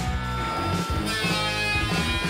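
Background music with guitar.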